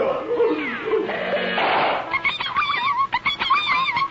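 Cartoon sailors crying out in fright. About two seconds in, a busy chorus of quick, high-pitched squeaks from a crowd of cartoon rats takes over.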